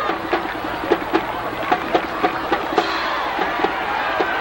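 A quick, uneven series of sharp pitched knocks, about three a second, over steady background noise.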